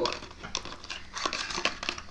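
Small cardboard product box being handled and opened: scattered light clicks, scrapes and rustles of the packaging.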